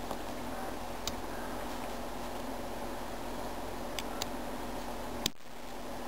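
Steady room hiss with a few faint small clicks from fingers handling a homemade 9-volt LED light and its melted plastic battery clip, and one sharper click a little past five seconds in.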